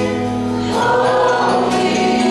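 A live worship band with several singers performing a song: sustained chords under voices singing together, with a rising sung phrase about a second in.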